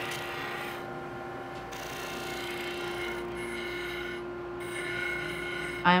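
Stationary disc sander running with a steady motor hum while a piece of wood is held against the sanding disc, giving a rasping rub. The rasp eases briefly about a second in and again past four seconds.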